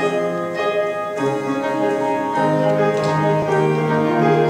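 Piano playing a slow introduction of held chords that change about every second, the accompaniment before the singing of a musical theatre song.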